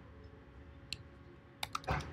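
Computer keyboard keys being typed: a single keystroke about a second in, then a quick run of several keystrokes near the end.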